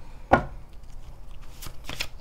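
Tarot cards handled on a tabletop: one sharp tap about a third of a second in, then a few lighter clicks near the end.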